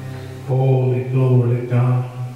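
A man's voice chanting in long held notes over a sustained electronic keyboard chord. The voice comes in about half a second in and runs as three held phrases, and both fade out right at the end.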